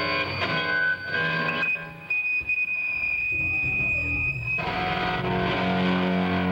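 Amplified electric guitar notes and chords over a low bass line. About two seconds in, a steady high-pitched whine takes over and holds for about two and a half seconds, then the full band comes back in.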